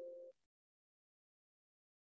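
A short electronic chime of a few steady pitched tones ends about a third of a second in, followed by digital silence.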